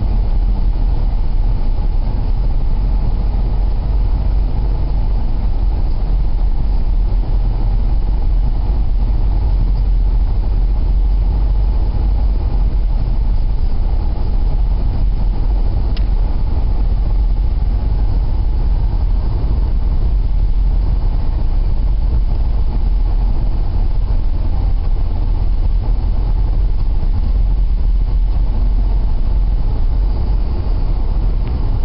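Steady low rumble of a car driving along a snow-covered road, engine and tyre noise heard from inside the vehicle, with one brief tick about halfway through.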